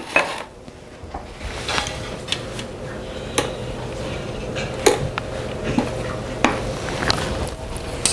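Spatula stirring sugar and vanilla into pudding in a stainless steel mixing bowl, scraping and knocking against the metal with several sharp clinks, over a low steady hum.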